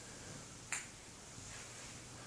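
A single sharp plastic click under a second in, from a child's yellow plastic toy golf club striking as it is swung.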